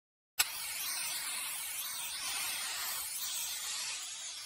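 Aerosol spray-paint can hissing steadily. It starts with a sharp click about half a second in, out of dead silence.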